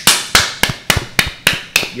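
Two men clapping their hands in a steady rhythm, about three sharp claps a second.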